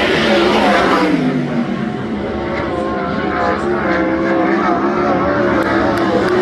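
Race car engine running on track. Its pitch drops about a second in, then rises and falls as the car works around the oval.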